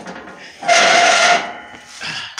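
Heavy metal shelving unit, loaded with bins, being dragged across a concrete floor on its unwheeled end: a loud scrape with a squealing tone lasting under a second, from about two-thirds of a second in.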